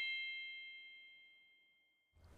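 A bell-like chime sound effect ringing out with several steady high tones, fading away over about a second and a half.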